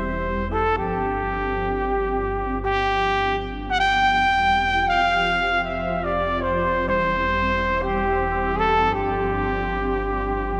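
Yamaha Genos digital keyboard playing its Super Articulation 2 flugelhorn voice: a slow, smoothly joined legato melody over sustained low chords.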